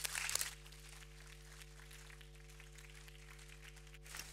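Brief applause that stops about half a second in, followed by a steady low hum.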